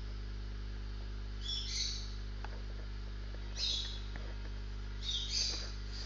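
Steady low electrical hum, with three brief high-pitched chirping sounds about one and a half, three and a half and five seconds in.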